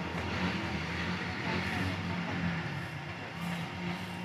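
A small engine running steadily with an even low hum.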